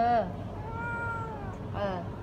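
A domestic cat meows: one long, steady meow that sags slightly in pitch, about half a second in, answering a woman's short murmurs.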